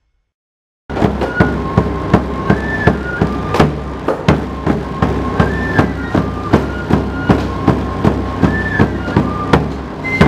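Andean pincullo flutes playing a melody over steady beats on caja drums, each struck by the same player who blows the flute. It starts suddenly about a second in, after near silence.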